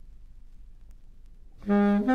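Baritone saxophone entering near the end with a sustained low note, the start of a cool-jazz ballad, after a faint low hum of the recording.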